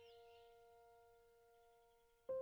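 Near silence: the last piano notes of the background music slowly dying away.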